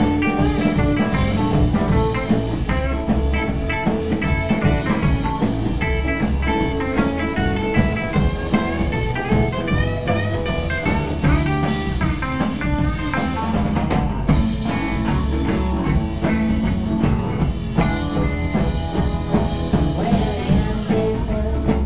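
Live blues-flavoured band playing an instrumental passage: electric guitar playing runs of lead notes over a drum kit and upright double bass, with no vocals.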